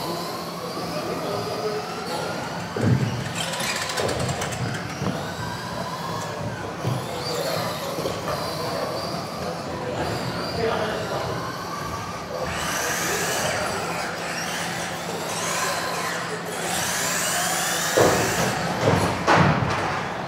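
Several 2WD electric RC racing cars running laps, their motors whining and rising and falling in pitch as they accelerate and brake, with voices in a hall behind them. A few sharp knocks stand out, about three seconds in and twice near the end.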